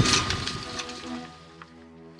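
A belt-fed machine gun firing a rapid burst that stops less than a second in, its echo dying away, with background music underneath.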